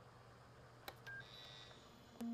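Near silence: a faint steady hum and hiss, with a single click about a second in and a couple of short, faint beeps just after it.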